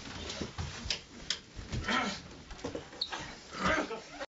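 Short non-word human vocal sounds, whimpers and gasps, mixed with scattered knocks and scuffles from people moving and struggling in a small room.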